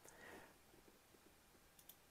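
Near silence with faint computer mouse clicks: one at the start and a quick pair near the end.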